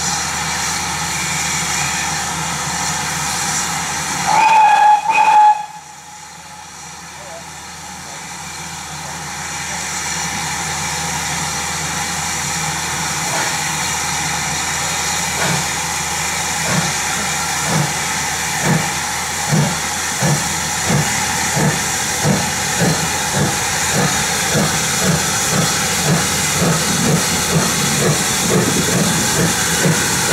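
GWR 5700 class pannier tank locomotive 4612: steam hissing, one short, loud blast on the engine's whistle about four seconds in, then the locomotive starting away, its exhaust beats quickening steadily over the second half.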